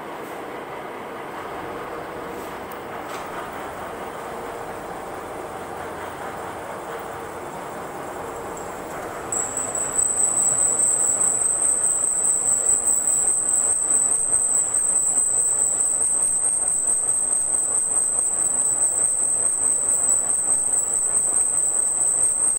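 Pillar drilling machine running steadily. About nine seconds in, a loud, steady high-pitched whine sets in and stays as the loudest sound.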